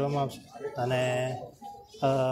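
A man's voice: the end of a word, then a drawn-out hesitation sound held at one pitch for about half a second, a little under a second in.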